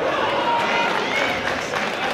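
Crowd of spectators shouting and cheering, many voices at once, during a wrestling bout in a gymnasium.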